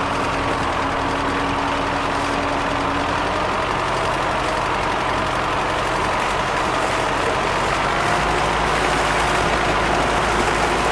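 Farm tractor engine running steadily while driving a PTO-powered propeller, with the prop churning and splashing the water. The low rumble grows a little stronger about eight seconds in.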